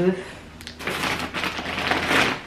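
Rustling and crinkling of packaging as a packet of instant noodles is rummaged out of a shopping bag, starting about a second in.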